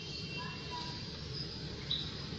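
A lull in the birdsong: a steady low background hum with a few faint, short whistled bird notes.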